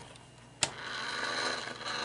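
A sharp click about half a second in, then the Tortoise slow-motion switch machine's small motor runs with a steady hum as it throws the points of an HO turnout across.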